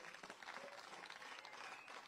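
Faint applause: a crowd clapping in an even patter.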